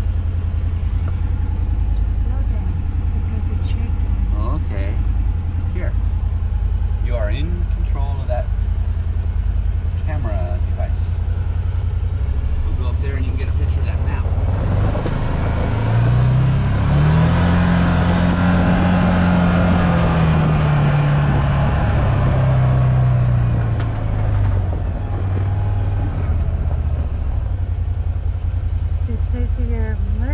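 Can-Am Maverick side-by-side's engine idling steadily, then, about halfway through, rising in pitch as the vehicle drives off across gravel, and settling back down some eight seconds later.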